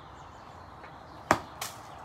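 A golf club striking a ball on a short, choked-up lofted shot: one sharp crack about a second and a half in, followed a moment later by a fainter knock.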